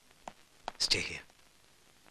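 A brief whispered voice, about a second in, with a few faint clicks just before it.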